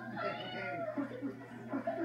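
A long, wavering meow that rises and falls in pitch through the first second, made for the stuffed toy cat with glowing eyes on the counter.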